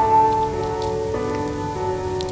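Background music of sustained held notes, the chord shifting about a second in, over a faint rain-like hiss.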